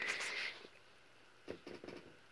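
Mostly quiet room: a faint breathy rustle in the first half second, then a soft tap about one and a half seconds in.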